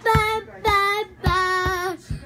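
A young boy singing three held notes, the first two short and the last one longer and a little lower.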